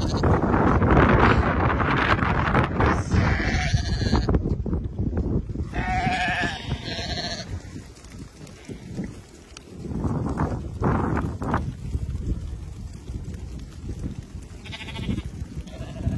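Flock of Karakachan sheep on the move, bleating a few times: about three seconds in, again around six to seven seconds in, and briefly near the end. A loud rushing noise fills the first half.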